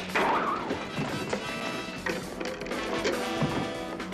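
Action music from a TV fight scene, with several sharp hits and crashes as a man is thrown over and into wooden diner chairs.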